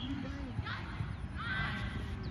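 Two high-pitched shouts from players calling out on the football pitch, about half a second and a second and a half in, after a nearer voice trails off at the start. Under them runs a steady low rumble of wind on the phone's microphone.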